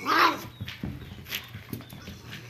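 Small dogs playing rough: one loud, short bark right at the start, rising then falling in pitch, followed by softer short vocal noises.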